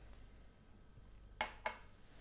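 A small tulip-shaped tasting glass set down on a table: two quick knocks of glass on the tabletop about a second and a half in, a quarter of a second apart.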